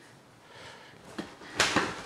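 Clear plastic bag around a stack of paper rustling and crinkling as it is handled. It stays faint at first, then a short, sharp crinkle comes about one and a half seconds in.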